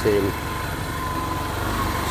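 A man's voice trails off just after the start, leaving a small engine running steadily at idle, its low pulsing drone carrying on until speech resumes at the very end.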